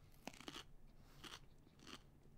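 A person biting and chewing a raw, thick-walled, juicy Aji Rainforest chili pod (a Capsicum baccatum pepper), heard as a few faint, short crunches.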